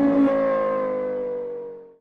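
Car engine rev sound effect winding down: one held note slowly falling in pitch and fading away.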